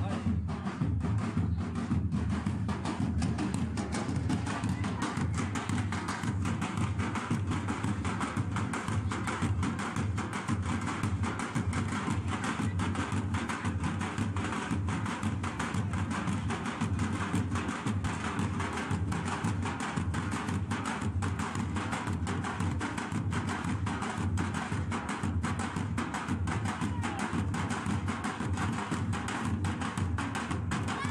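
Several hand-held drums played together in a fast, continuous rhythm of sharp strokes.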